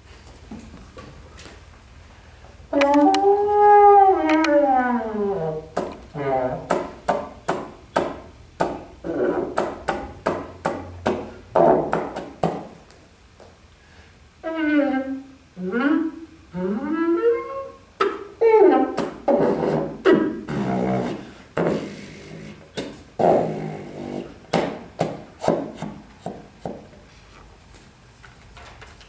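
French horn played with extended techniques: long falling glissandi, first loud about three seconds in and again midway, between runs of short detached notes and sharp clicks.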